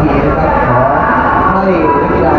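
A crowd of people's voices, many calling and cheering over one another at once.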